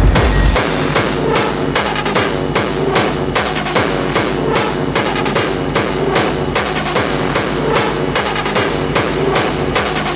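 Downtempo hardcore electronic music from a DJ mix, with a fast, steady drum beat. The heavy bass drops away about half a second in, leaving the beat over lighter layers.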